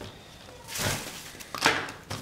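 Two short rustles of coarse bark potting mix shifting in a small plastic pot as an orchid is set into it, the second briefer and sharper.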